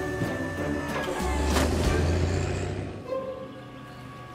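Cartoon sound effects of a forklift's engine rumbling as it lifts and loads wooden pallets, with a short sharp noise about a second and a half in. Soft background music carries on as the rumble fades near the end.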